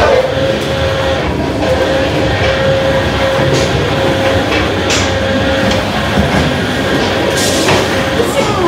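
Vortex tunnel's rotating drum running: a loud, steady, train-like rumble with a constant hum.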